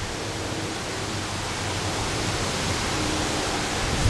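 Steady wind noise rushing over the microphone, even and unbroken, with a faint low hum in the background.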